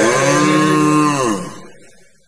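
A slowed-down, pitched-down male voice holds one long sung note. About a second and a half in, the note bends down in pitch and fades out as the song ends.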